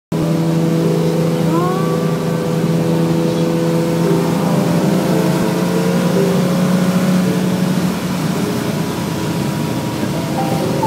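A Ferrari 330 GTC's V12 engine running at a steady cruise, heard from inside the cabin together with road noise. A short rising note comes about a second and a half in.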